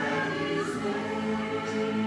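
A mixed church choir of men and women starts singing in harmony, entering loudly at the start over sustained instrumental accompaniment.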